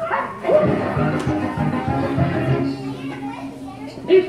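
Dubbed children's cartoon soundtrack: background music with character voices, and a dog barking.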